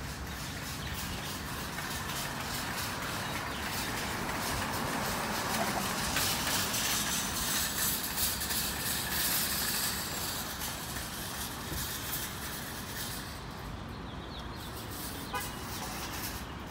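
Motor-vehicle traffic: a steady low rumble that grows louder for a few seconds in the middle, then settles again.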